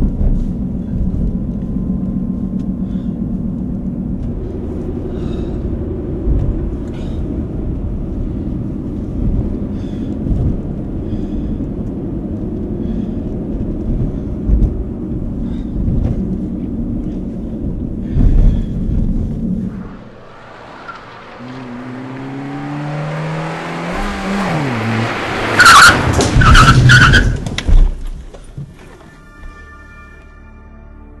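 A car running, heard from inside the cabin as a steady low engine and road rumble. About two-thirds of the way in it drops away, then the engine revs climb and the car goes into a hard skid, with tyres squealing and loud banging bursts near the end, as in a sudden emergency stop and collision.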